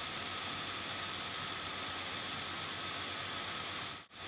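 Steady low hiss of room tone and microphone noise, with faint constant high-pitched electronic whines running through it. The sound drops out abruptly at the very end.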